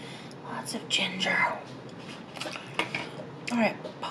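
Chopsticks clicking against plastic food trays and being set down, with a few short hums, and a falling vocal sound shortly before the end.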